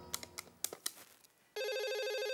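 A few sharp clicks of desk-telephone keypad buttons being pressed to dial. About one and a half seconds in, a desk telephone starts ringing with a steady, fluttering electronic trill.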